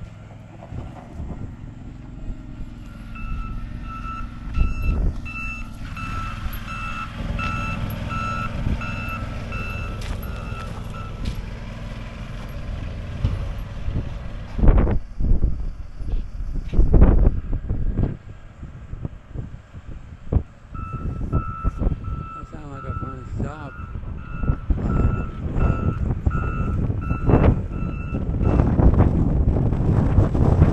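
Reversing alarm of a small snow-clearing tractor beeping at about one and a half beeps a second, in two runs of several seconds each, over the low running of its engine. A few loud low thumps come about halfway through, between the runs of beeps.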